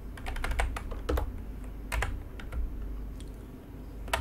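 Typing on a computer keyboard: a quick run of keystrokes in the first second or so, a sharper key press about two seconds in, then a few scattered taps.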